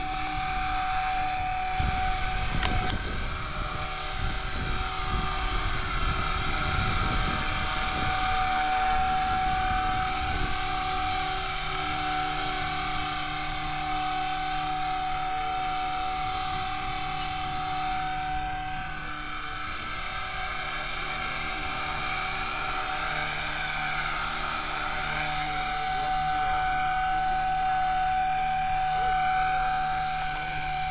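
Blade 180 CFX electric RC helicopter in flight: a steady high whine from its brushless motor and spinning rotors. Wind rumbles on the microphone in the first several seconds; the whine drops for a few seconds about two-thirds of the way through, then returns strongly as the helicopter hovers low.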